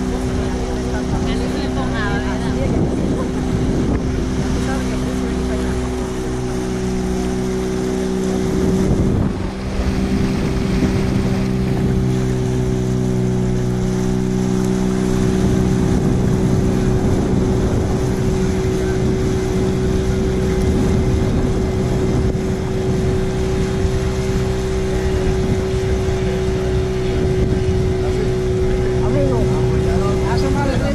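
The outboard motor of a small open passenger boat runs steadily under way, over rushing water and wind noise. Its tone dips and shifts briefly about nine seconds in.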